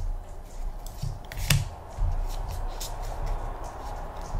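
Pokémon trading cards being handled and slid against one another in the hands, with soft rustles and a few light clicks.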